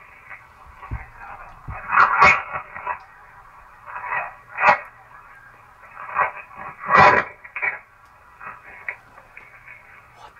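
Playback of an overnight audio recording through a small speaker: steady hiss and hum with several short loud sounds, about two, five and seven seconds in, which the listeners take for something screaming.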